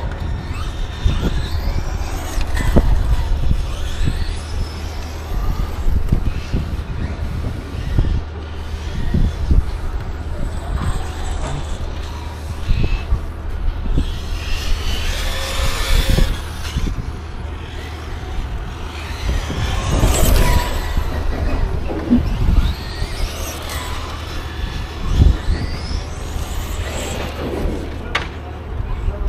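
Radio-controlled car driven on a paved track, its motor pitch rising and falling over and over as it accelerates and slows through the corners.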